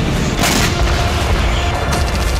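Explosion booms with a deep continuous rumble and one sharp blast about half a second in, over dramatic background music.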